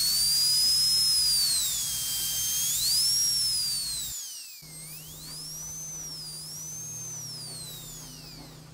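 High-speed dental drill whining, its pitch rising and falling as it speeds up and slows down. It is loudest in the first three seconds, dips lowest about five seconds in, then carries on more faintly.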